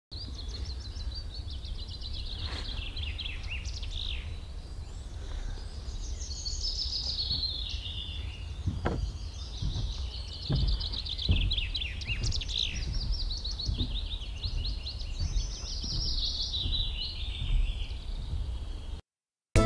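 A small songbird singing a long, unbroken song of fast, high repeated notes that change from phrase to phrase. A low steady rumble runs underneath, with a few soft knocks about halfway through.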